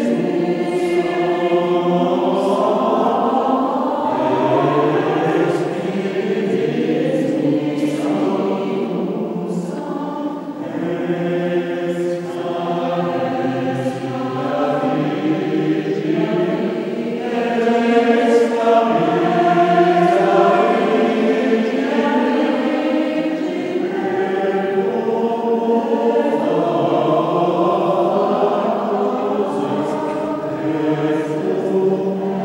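Mixed choir of women's and men's voices singing a classical choral piece in a stone abbey church, sustained chords that swell a little louder just past the middle.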